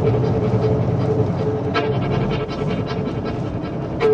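Steady rumble of a car driving, heard from inside the cabin, with a constant hum and scattered light clicks.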